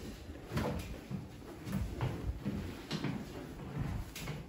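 A person shifting and rolling over on a padded treatment table: a few light knocks and creaks with clothing rustle, spaced out.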